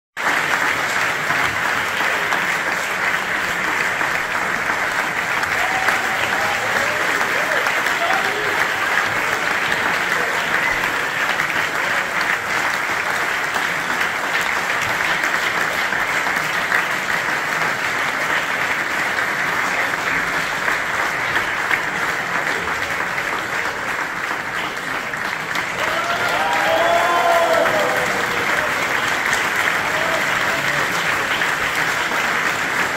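Audience applauding steadily in a hall. A few voices call out from the crowd about a quarter of the way in, and again more loudly near the end.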